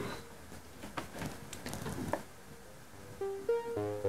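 Pure Data software synthesizer with sawtooth oscillators, a filter and a short attack-release envelope, playing a repeating arpeggiator sequence of notes that step in pitch. It is faint at first and comes up clearly about three seconds in as its volume is raised.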